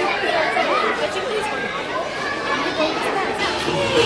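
Crowd chatter: many voices talking over each other at once, children's among them.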